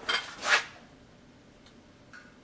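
Metal auto-body hammers and dollies, some in plastic wrap, clattering in their plastic carrying case as they are handled: two short clatters within the first half-second.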